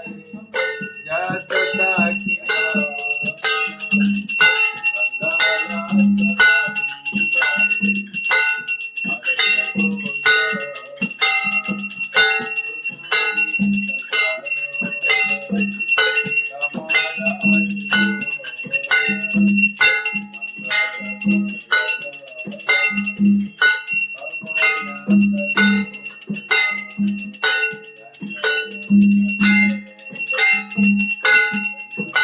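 Devotional kirtan accompaniment: a mridanga drum beaten in a steady rhythm, brass hand cymbals (karatals) clashing on the beat, and a bell ringing continuously over them.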